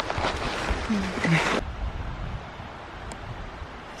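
Willow branches and leaves brushing and crackling against the camera and clothing as a hiker pushes through thick overgrown brush, with a brief voice sound about a second in. The rustling cuts off suddenly about a second and a half in, leaving a quieter steady background noise.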